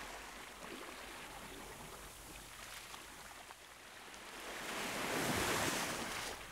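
Sea waves washing on the shore, a soft even rush that swells again near the end.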